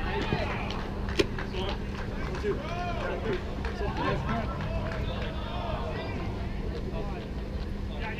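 Distant players' voices and calls echoing in a large air-supported sports dome, over a steady low hum, with a few sharp clicks; the clearest comes about a second in.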